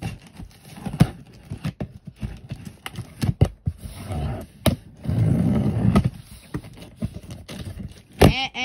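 Cardboard shipping box being handled and opened, with sharp clicks and knocks and scraping of cardboard. A longer, louder stretch of rough scraping comes about five seconds in.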